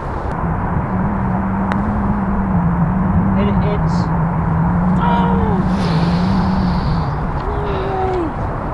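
Steady low engine drone, wavering slightly in pitch, over a low wind rumble on the microphone.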